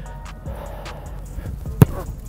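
A single sharp thump near the end as a bare foot strikes a football from a kicking holder on a no-step kick, over background music.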